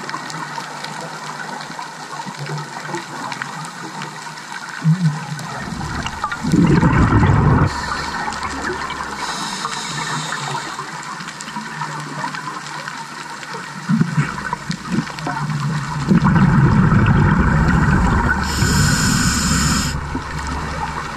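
Scuba diver breathing through a regulator underwater: a steady bubbling background with two loud gushes of exhaled bubbles, a short one about a third of the way in and a longer one near the end. A brief high hiss comes about halfway through.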